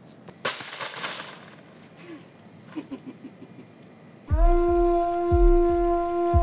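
A short rush of noise about half a second in, then faint clicks. A little past four seconds a film score comes in: one sustained, steady wind-like note over low drum thumps.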